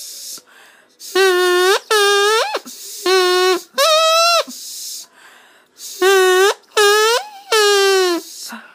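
Drinking-straw reed, a plastic straw with its end cut to a point and blown like a bassoon's double reed, giving seven short buzzy honks, mostly in pairs. Each holds one steady mid-pitched note, and some jump higher just before they stop.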